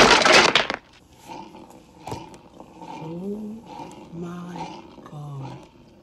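Film soundtrack: a loud crash and breaking that stops about a second in, followed by several faint, low voice sounds.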